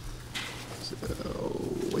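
A voice in a meeting room saying 'aye', then a drawn-out 'so…' that gets louder toward the end.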